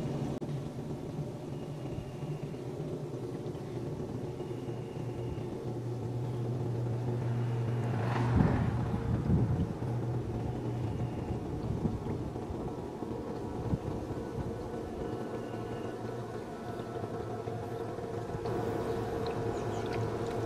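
Green Expert 1/3 HP submersible sump pump running steadily under water with a low electric hum, still pumping as the water level drops toward its shut-off sensor. A brief louder rumble comes about eight seconds in.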